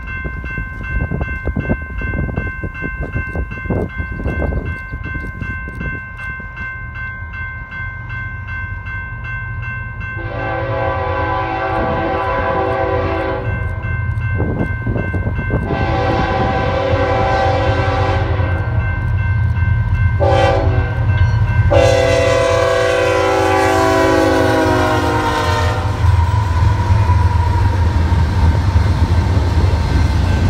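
Diesel freight locomotive's multi-note air horn sounding the grade-crossing signal as the train approaches: two long blasts, a short one, then a long one. Under it the low rumble of the train grows, loudest near the end as the double-stack cars roll past close by.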